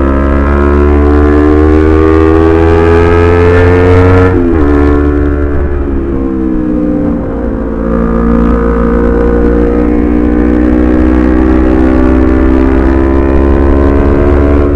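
Honda CBR250RR's 250 cc parallel-twin engine heard from the rider's seat under way. It climbs in pitch for about four seconds, breaks off sharply as the rider shifts and rolls off, drops for a few seconds, then pulls steadily higher again, all over a low wind rumble on the microphone.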